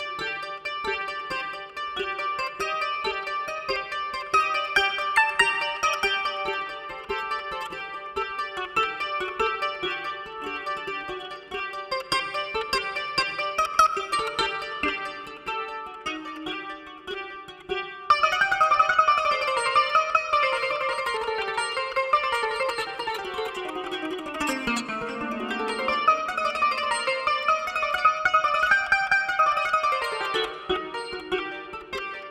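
Kora, the West African calabash harp-lute with a cowskin soundboard, plucked with the thumbs and forefingers in a continuous flow of notes. About eighteen seconds in it gets louder, with a run that falls to low notes and climbs again.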